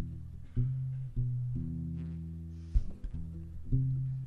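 Solo acoustic guitar playing the opening bars of a song: sustained chords with low bass notes, a new chord sounded about once a second.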